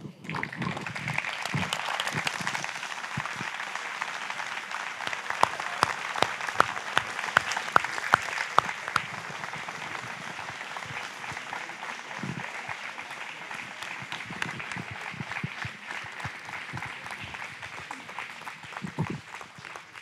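Audience applauding: a dense patter of many hands clapping, with sharper, louder claps standing out a few seconds in, then gradually thinning out toward the end.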